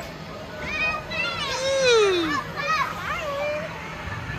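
Children shouting and squealing, several high voices bending up and down in pitch, with one long cry sliding down in pitch about two seconds in, over a steady low hum.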